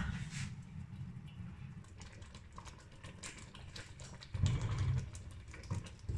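Faint, irregular light ticks over a low steady rumble, then a short dull bump of handling about four and a half seconds in, as the lid of a stainless steel cooking pot is taken off.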